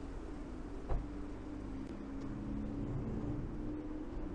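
City traffic: a car's engine hum, rising slightly, over a steady low rumble of traffic, with one dull thump about a second in.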